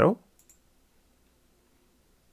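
A faint computer mouse click about half a second in, then quiet room tone.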